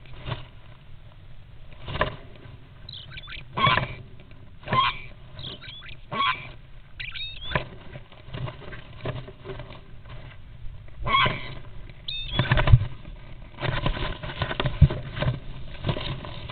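Two European starlings fighting inside a nest box: irregular scuffles, wing flaps and knocks of the birds against the box walls, busiest in the last few seconds, with a few short high squeaks in between.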